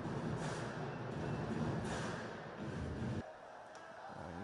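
Ice hockey rink sound: skate blades scraping across the ice in several short hissing strokes over steady arena noise. It drops suddenly to a quieter background just after three seconds in.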